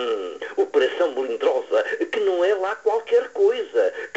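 Speech only: a voice reciting a poem in Portuguese, with no other sound.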